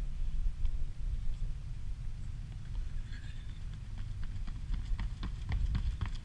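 Running footsteps of athletes sprinting on asphalt: quick shoe strikes that come more often toward the end. Under them is a steady low rumble of wind on the microphone.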